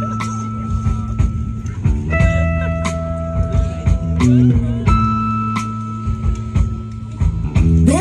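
Live rock band playing an instrumental passage: an electric guitar rings out long high notes that switch back and forth between two pitches, over a steady bass line and drums.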